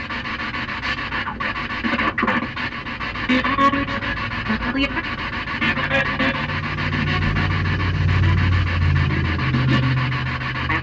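Spirit box sweeping through stations: a steady wash of choppy static hiss that flutters rapidly. A low steady hum joins about six seconds in.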